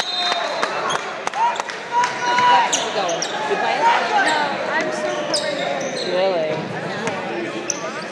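Gymnasium hubbub: players and spectators calling out over one another in a large echoing hall, with a ball bouncing on the hardwood floor a number of times. A referee's whistle is cut off just as it begins.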